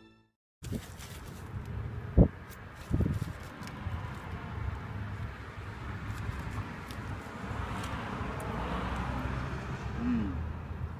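Outdoor background noise: a steady low rumble that swells a little near the end, with two sharp knocks about two and three seconds in and scattered light clicks.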